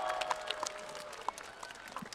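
Scattered applause from a concert audience, thinning out and dying away.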